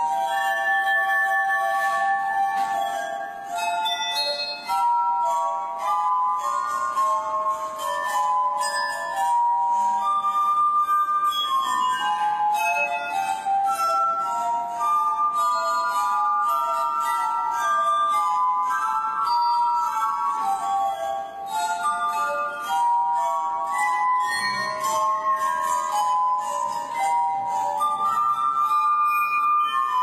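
Tuned drinking glasses played as a glass harp: a slow melody of long, held, overlapping ringing notes.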